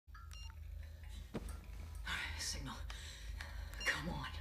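Cell phone keypad beeps: a few short electronic tones in quick succession near the start, and one more just before the end, over a steady low hum.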